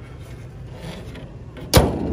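The bonnet of a Daewoo Lanos being let down and slammed shut: one loud metal bang near the end, after a second and a half of handling.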